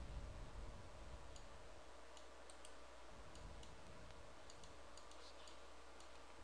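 Faint, irregular clicking of a computer mouse and keyboard, about a dozen clicks.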